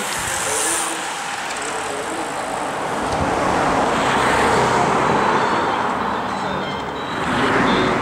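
A bunch of racing road cyclists passing close by: a steady hiss of tyres and rushing air that swells in the middle and again near the end.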